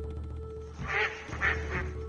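A low, steady music drone with a held tone underneath; about a second in, three short, harsh animal calls.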